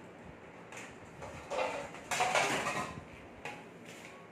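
Kitchenware being handled: a metal baking tray and dishes clattering and scraping, in two short bursts about one and two seconds in, the second one louder.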